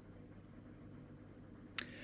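Quiet room tone in a pause between sentences, with one sharp, short click near the end: a mouth click as the lips part just before speaking.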